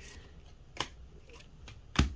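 Magic: The Gathering cards handled and laid down by hand on a playmat: a faint rustle with a short card click about a second in and a sharper one at the end.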